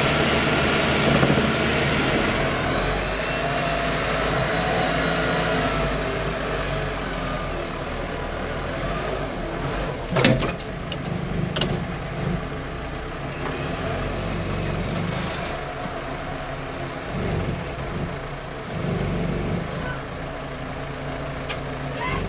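Farm loader's engine running steadily under load, heard from inside the cab while it lifts and carries large square alfalfa bales on a bale fork. A sharp knock sounds about ten seconds in, with a smaller click a second later.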